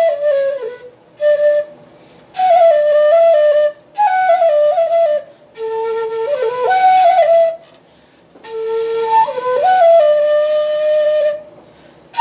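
Bansuri, a side-blown flute, playing a solo melody in short phrases separated by breathing pauses, the notes stepping up and down with a few slides between them.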